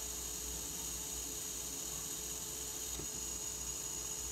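Faint steady hiss with a low hum and a thin steady tone, the small Faulhaber geared DC motor running continuously in one direction under power from an L298N driver module.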